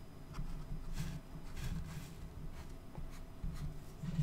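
Felt-tip marker drawing a series of short dashes along a ruler, a faint scratch with each stroke.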